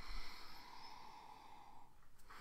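A person sniffing a glass of beer: one long, steady inhale through the nose, lasting about two seconds, to take in the aroma.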